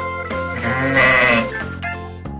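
A goat bleating once, a long wavering call starting about half a second in, over background music.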